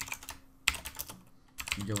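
Computer keyboard being typed on: a few quick runs of keystrokes with short pauses between them.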